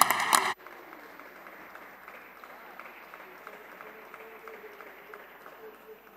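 Deputies applauding from the benches of a parliament chamber. The clapping is loud for the first half second, then drops suddenly to a fainter, more distant, even patter for the rest.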